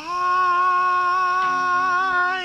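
A voice holding one long, high, wailing note: it slides quickly up into the pitch and then holds it steady. A lower sustained accompanying tone comes in about one and a half seconds in.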